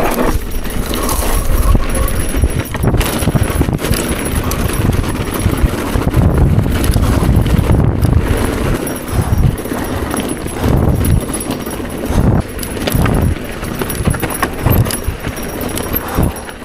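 Mountain bike descending a rough dirt singletrack: tyres on dirt and rock with irregular knocks and rattles from the bike and its handlebar bags over bumps, under a heavy wind rumble on the camera microphone.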